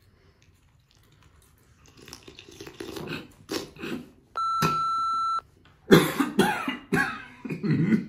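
A man coughing and sputtering after a shot of Frostbite hot sauce, growing louder in the second half. A one-second steady bleep tone cuts in about four and a half seconds in.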